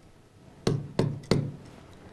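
Three sharp taps of a stylus against an interactive display screen while drawing on it, about a third of a second apart.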